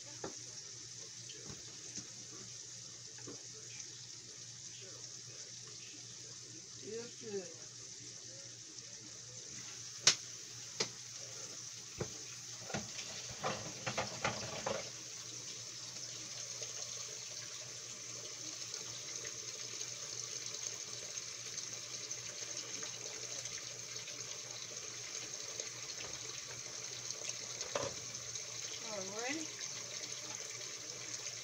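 Catfish and green tomatoes frying in hot grease in two pans: a steady sizzle that grows a little louder about a third of the way in. A sharp pop about a third in, then a run of pops and light knocks a few seconds later.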